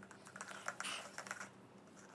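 Plastic iced-drink cup with a domed lid and straw being handled and lifted to sip: a quick run of light plastic clicks and crackles over the first second and a half, then quiet handling.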